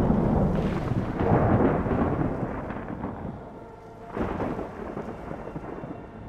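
Thunder in a storm: a loud peal that breaks suddenly and rolls away over about three seconds, then a second rumble about four seconds in.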